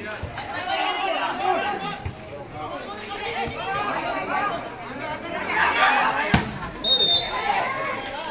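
Players and onlookers chattering and shouting during a volleyball rally. About six seconds in comes one sharp smack of the ball, followed at once by a short blast of the referee's whistle.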